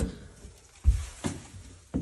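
A single dull thump a little under a second in, followed by a couple of fainter knocks, with quiet between them.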